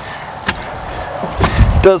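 A sharp click about half a second in, then a dull, low thump near the end: the sounds of a person climbing into the driver's seat of a Dodge Nitro.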